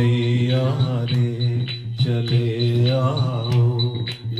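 A Hindu devotional bhajan sung by a voice in held, gliding notes over a steady low drone, with hand claps keeping time.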